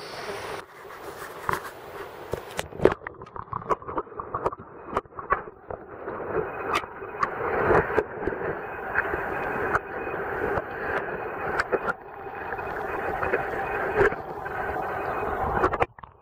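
Stream water heard through a submerged camera: a muffled, dull rushing with many short clicks and knocks, thickest in the first half. It cuts off suddenly at the end.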